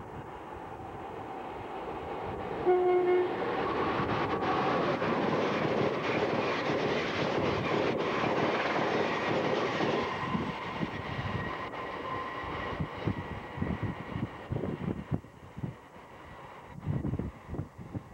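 Amtrak train hauled by an AEM-7 electric locomotive gives one short horn blast about three seconds in. It then passes the platform at speed with a loud rush of wheels on rail, which fades as the train recedes. Low thumps come near the end.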